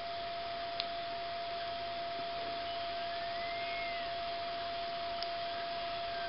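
Receiver audio from a Beach 40 ham transceiver tuned to the 40 m band: steady band hiss with a single steady carrier beat note. A faint whistle glides up and back down about halfway through.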